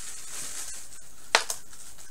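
Hands rustling a small doll garment and its packaging, with two sharp clicks close together about a second and a half in.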